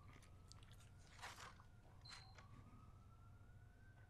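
Near silence: room tone, with a faint, slowly rising whine heard twice and a soft brief rustle about a second in.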